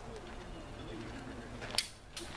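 Quiet outdoor background broken near the end by a single sharp crack.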